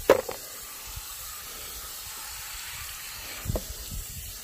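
Garden hose spray gun spraying water onto a planted watering can, a steady hiss, washing spilt compost off the plants. A sharp knock comes just after the start, with a smaller one about three and a half seconds in.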